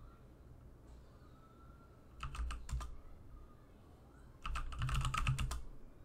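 Typing on a computer keyboard: a short run of keystrokes about two seconds in, then a longer, faster and louder run a couple of seconds later as a command is entered into a terminal.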